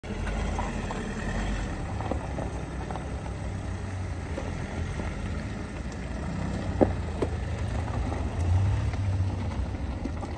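Cars driving slowly past on a gravel road: a steady low engine and tyre rumble that swells slightly about 8.5 seconds in, with two sharp clicks about seven seconds in.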